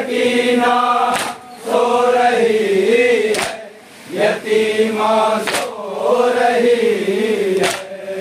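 A group of men chanting a nauha, an Urdu lament, in unison in long wavering melodic lines, with a sharp slap about every two seconds from the chest-beating (matam) that keeps time with it.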